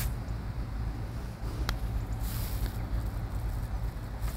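Wind rumbling on the microphone, with a light click at the start and another about a second and a half in: a putter striking a golf ball.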